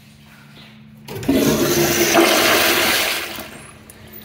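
Zurn flushometer valve flushing a commercial toilet: a loud rush of water starts about a second in, runs for about two seconds and dies away near the end.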